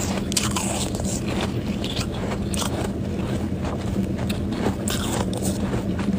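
Powdery freezer frost being bitten and chewed: a run of crisp, irregular crunches, over a steady low hum.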